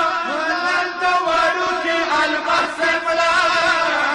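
Several men's voices chanting a Pashto noha, a Shia mourning lament, together into a microphone in long held melodic lines, unaccompanied.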